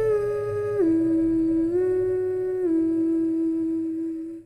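A voice humming a slow tune in long held notes: the pitch drops about a second in, rises a little, then drops again near the three-second mark.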